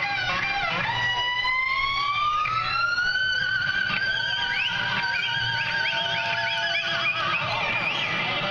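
Live rock band playing, led by an electric guitar solo: a long note bent upward and held with vibrato, then a run of quick bent notes.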